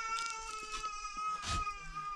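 A goat bleating: one long, steady call.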